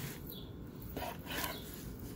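Large knife slicing through a seared tri-tip roast on a wooden cutting board, a few short cutting strokes through the crusted outside.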